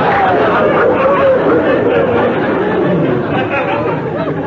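Studio audience laughing, many voices overlapping, easing off slightly toward the end.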